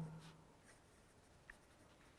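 Faint scratching of a pen writing on paper, barely above room tone.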